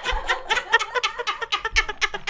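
Two women laughing hard: high-pitched laughter in quick repeated pulses.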